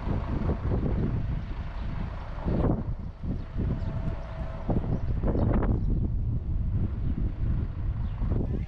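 Wind buffeting the camera's microphone: an uneven low rumble that swells in gusts, strongest about a third of the way in and again just past halfway.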